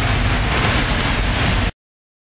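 Wind buffeting the microphone over a steady rushing hiss of rain outdoors, cut off suddenly into dead silence near the end.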